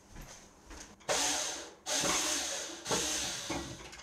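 Power drill running in three short bursts of about a second each, driving screws while a desk is assembled.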